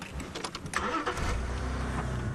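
Safari game-drive vehicle's engine being started: a second or so of starter noise and clicks, then it catches and settles into a steady low idle.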